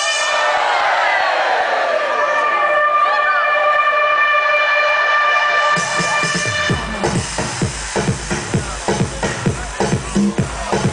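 Electronic dance music from a DJ set played loud over a sound system: a held synth chord with a falling sweep, then a steady kick drum and bass come in about six seconds in.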